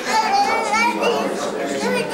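Children's high-pitched voices talking and calling out, with other voices behind them.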